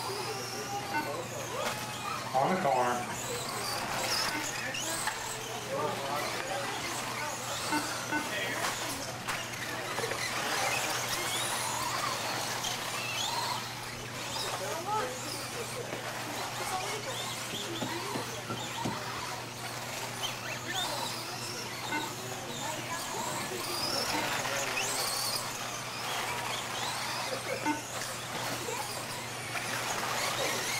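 Several electric RC off-road buggies racing: their motors whine, rising and falling in pitch as the cars accelerate and brake around the track. A steady low hum runs underneath.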